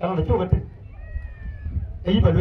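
A man's voice through a microphone speaking a short phrase, then a faint, thin high-pitched call that dips slightly in pitch over about a second.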